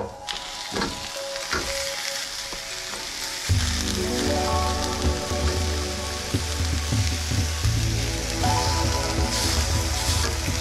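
Ginger chunks and halved onions sizzling steadily as they are laid cut side down in a hot cast iron skillet to char, with a few knocks as pieces are set down in the first two seconds.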